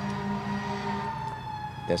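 Fire-engine siren sounding, one tone that slides slowly lower in pitch, over a low steady hum.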